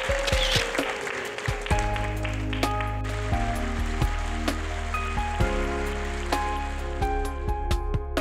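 Background music for a TV segment title: a noisy wash for the first second or so, then held low bass notes under sustained chords and melody notes, with light percussive hits scattered through.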